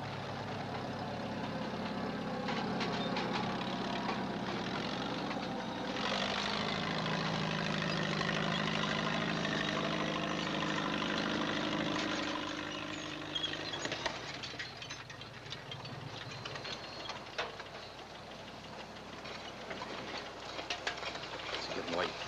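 A motor vehicle engine running steadily. It grows louder about six seconds in, then dies away a little after twelve seconds, leaving faint scattered clicks and knocks.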